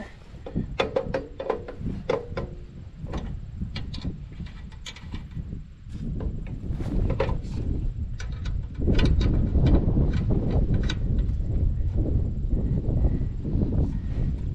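Scattered clicks and knocks from handling a homemade fence-wire winder and its wire reel mounted on a lawn tractor. About nine seconds in, a louder, steady low rumble takes over.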